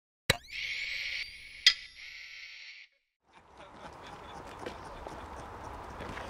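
Film soundtrack opening: a sharp click with a rising sweep, then a steady high hiss lasting about two and a half seconds with a second sharp click partway through. After a short silence, a faint outdoor ambience fades in.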